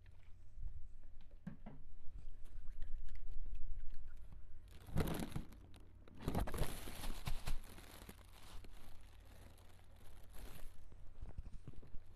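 Clear plastic barber's cape crinkling and rustling: a short burst about five seconds in, then a longer stretch of about four seconds, with scattered light clicks and taps before it.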